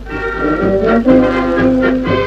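A brass band strikes up a tune with tubas and other brass over a bass drum beating about twice a second.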